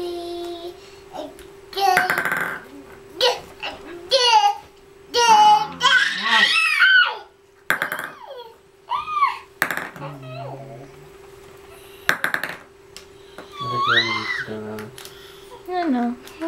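A baby babbling and squealing in short phrases that slide up and down in pitch, with several sharp knocks as toys are handled. A steady hum runs underneath.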